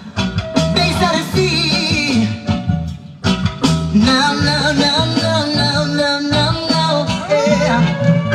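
Recorded music with heavy bass and a singing voice, played loud over a Jamaican sound system. It cuts out briefly about three seconds in.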